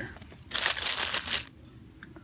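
Stainless steel exhaust band clamp pieces clinking and jingling against each other as they are handled, a metallic rattle lasting about a second, starting about half a second in.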